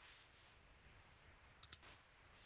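Near silence, broken near the end by two quick computer mouse clicks in close succession.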